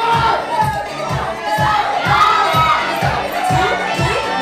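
Crowd shouting and cheering over a DJ's dance track with a heavy kick drum at about two beats a second, the beat having just come in.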